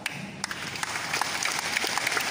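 An audience applauding: many hands clapping at once, growing louder over the two seconds.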